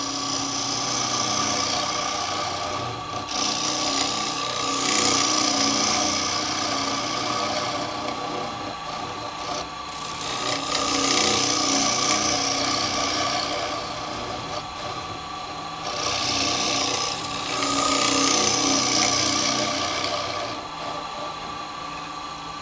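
Carbide turning tool cutting the inside of a spinning wooden bowl on a lathe: a hiss of cutting comes in four passes of a few seconds each over the lathe's steady hum.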